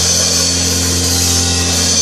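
Live church band music: a held chord over drums and cymbals, loud and steady.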